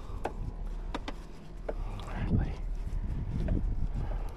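Scattered clicks and knocks from handling a fish and a lip-grip tool on a small boat, over a low steady rumble of wind on the microphone.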